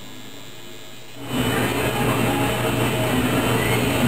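Electric coil tattoo machine buzzing steadily, jumping suddenly much louder a little over a second in.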